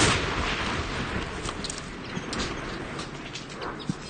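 A nearby artillery shell explosion: a sharp blast right at the start, followed by a long rumbling decay with scattered sharp cracks and clicks.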